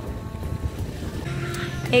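Low rumbling noise of wind buffeting the microphone, with faint background music. A steady low hum joins a little past halfway.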